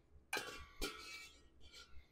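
A metal spoon clinks lightly against the cookware as boiled potatoes are loaded into a large metal potato ricer. There are two sharp clinks with a brief faint ring in the first second, and a lighter tap near the end.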